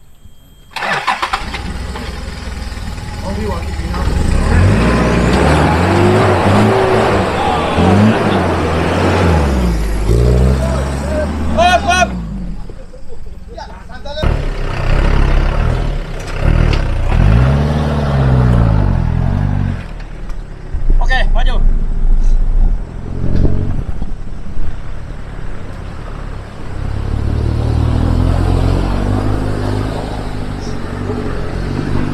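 Off-road 4x4 engines revving in repeated rising and falling surges under load as they climb a muddy, rutted track. The sound breaks off abruptly about 12 seconds in and resumes about 14 seconds in.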